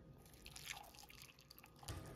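Faint drips and light ticks, then near the end a soft knock as a kettle starts pouring hot water into a ceramic mug.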